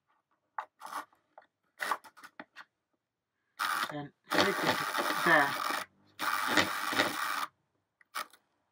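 Small electric motor of an OO-gauge model locomotive whirring in three short bursts that start and stop abruptly, after a few scraping clicks of a screwdriver against the chassis. It runs only while the screwdriver bridges the motor terminal and the armature, the sign of a fault in the motor's feed that the owner puts down to a dud motor.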